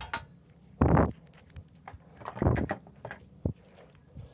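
A few short knocks and clatters of tools and parts being handled on a metal amplifier case, the loudest about a second in and another about two and a half seconds in.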